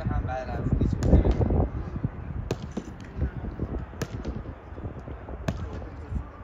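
Footballs thudding against gloves and turf in a goalkeeper drill: three sharp hits about a second and a half apart, with voices calling on the pitch.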